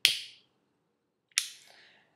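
Two sharp metallic clicks from a Vertigo Governor soft-flame pipe lighter being worked, one at the very start and one about a second and a half in, the second trailing off faintly.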